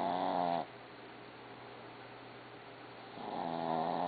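Dog snoring in its sleep: two long pitched snores about three and a half seconds apart, one fading out just after the start and the next beginning about three seconds in.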